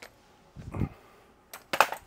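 Mobility scooter being tipped back onto its rear: a dull low thump about half a second in, then a louder, sharp clatter of knocks near the end from the scooter's plastic body and frame.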